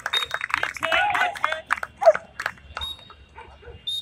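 Dogs barking rapidly, a string of sharp barks close together that thins out and grows quieter in the last second or so.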